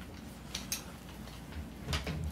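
A few faint clicks and light knocks as a loaded 1911 pistol in its holster is handled and set down on a digital scale.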